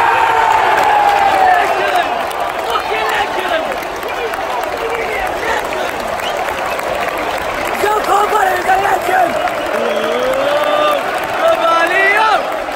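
Football stadium crowd cheering and applauding a goal: dense clapping under many voices shouting at once, loudest in the first two seconds and then settling into steady applause and shouts.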